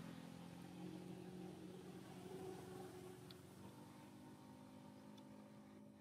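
Faint, steady hum of a distant engine, slowly fading away.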